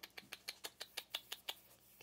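A quick run of faint, sharp clicks, about five a second, slightly uneven, the kind of clicking used to coax young puppies over.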